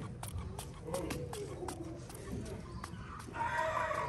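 A chicken calls once, briefly, near the end, over a string of small sharp clicks.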